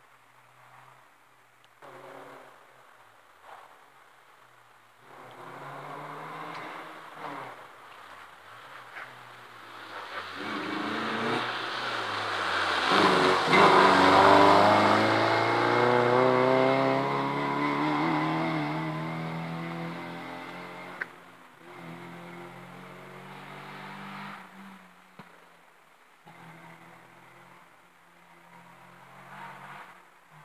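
Rally car approaching at speed with its engine revving through the gears, loudest about halfway through as it passes, then dropping in pitch and fading as it goes away.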